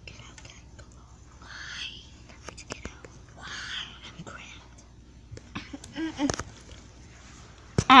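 A person whispering in two short hushed phrases, with scattered soft clicks and a couple of brief low voiced sounds near the end.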